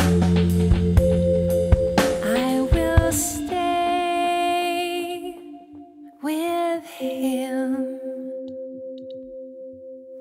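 Progressive rock instrumental passage: drums and bass play for about the first three seconds, then drop out, leaving sustained keyboard chords that grow quieter, with a short gliding phrase about six seconds in.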